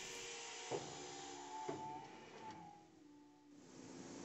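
Indexing parts-washer conveyor moving fixtured cylinder heads: a faint motorised whir with two clunks about a second apart. It drops away about three seconds in, then a steady rushing noise rises.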